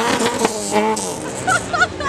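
A car engine revs up and falls back at the start, and a person whoops and shouts close by.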